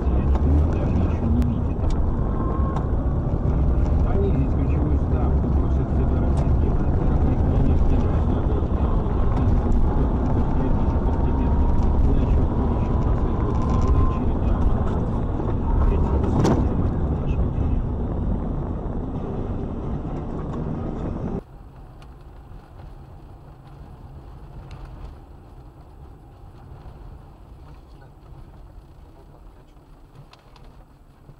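Dashcam audio from inside a moving car's cabin: a loud low rumble of engine and road noise, with a faint rising whine in the middle and one sharp knock about sixteen seconds in. About two-thirds of the way through it cuts abruptly to much quieter road noise.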